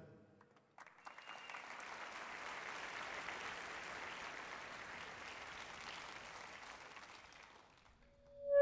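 Audience applauding, rising about a second in, holding steady and then fading away near the end.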